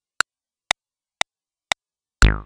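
Arturia Spark drum machine's metronome clicking steadily, four identical clicks two per second (120 BPM), with silence between them.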